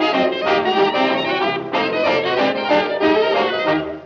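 Brass music as the closing theme, horns playing a quick run of notes, fading out at the very end.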